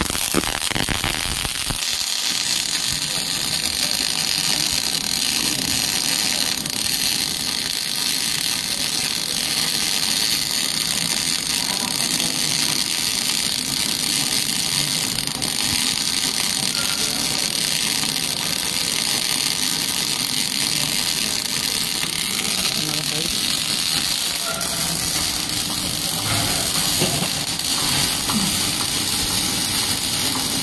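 MIG welding arc burning continuously, a steady frying crackle and hiss as the wire feeds into the weld pool.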